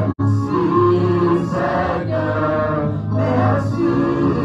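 Gospel worship music: voices singing over a steady, sustained low accompaniment, with a brief drop-out in the sound just after the start.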